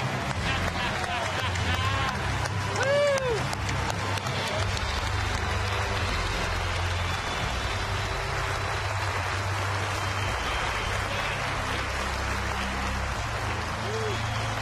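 Crowd applauding steadily in a standing ovation, with a few voices whooping and cheering in the first few seconds.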